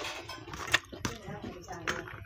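Close-up mouth sounds of chewing food, with two sharp crisp crunches, about a second apart, from crunching a fried papad.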